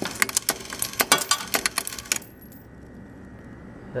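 Vintage Cavalier vending machine's coin changer working a quarter: a rapid run of metallic clicks and clacks as the change mechanism slides back and forth and ejects nickels, with coins clattering out. It stops abruptly about two seconds in.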